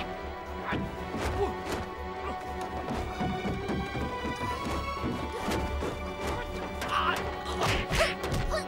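Fight sound effects: a rapid run of punch and blow impacts, whacks and thuds, with the heaviest hits near the end, over background music.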